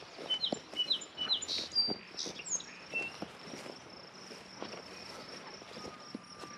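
Footsteps on a grass path, a soft knock about every half second, with a few short bird chirps in the first second and a half and a steady high insect trill underneath.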